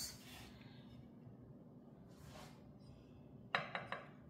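Quiet kitchen room tone, then a quick run of light clicks and clinks in the last half second as dishware is handled on the counter.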